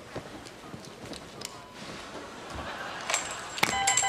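Bedding and gown rustling with soft knocks as a person gets out of a hospital bed, then a rapid electronic beeping, about four short beeps a second, starting near the end.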